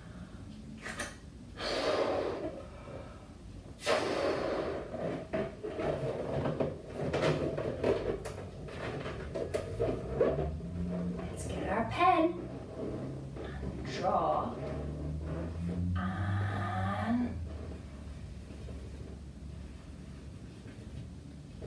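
A latex balloon being blown up by mouth: long puffs of breath into the balloon in the first half, then squeaky rubber sounds with wavering, rising pitch as the inflated balloon is handled and tied.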